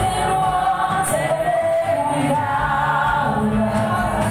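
A live gospel worship song: a woman sings lead into a microphone, backed by a choir of singers and a band that includes a guitar. The voices hold long sustained notes.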